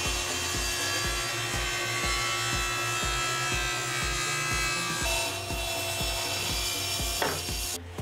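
Table saw blade ripping through a thick walnut slab clamped to a crosscut sled, a steady whine and sawing hiss that cuts off suddenly near the end. Background music with a steady beat plays underneath.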